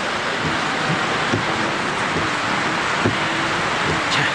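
Heavy rain pouring down in a steady, dense hiss.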